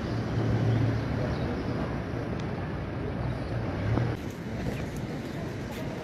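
Fast-flowing muddy floodwater rushing past, a steady heavy noise, with a change in the sound about four seconds in.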